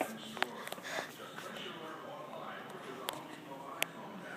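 Faint, indistinct voices in the background, with a few sharp clicks about half a second in, about three seconds in and near the end.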